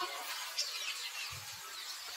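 Birds chirping in short, high calls over a steady outdoor background, with one brief soft low thud about one and a half seconds in.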